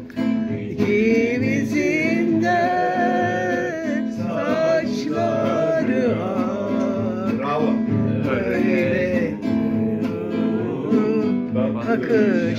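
Acoustic guitar strummed and plucked in steady chords, accompanying a singing voice.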